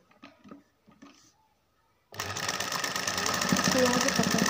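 Sewing machine starting suddenly about two seconds in and running at a steady fast stitching rhythm, sewing a seam; a few soft handling clicks come before it.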